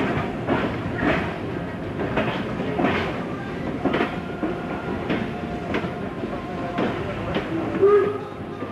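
Train running along the line, its wheels clacking over rail joints about once a second over a steady rumble, heard from aboard the train.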